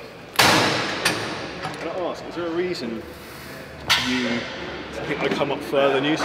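Two loud metal clangs of gym weights, one just after the start and another near four seconds in, each ringing briefly.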